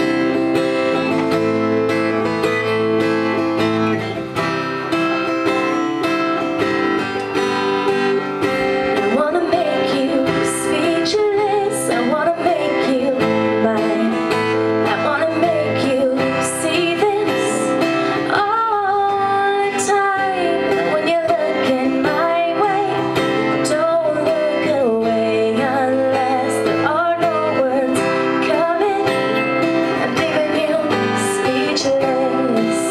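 Acoustic guitar strummed alone as an intro, then a woman's voice sings over it from about nine seconds in.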